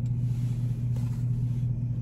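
Steady low hum of a car idling, heard from inside the cabin.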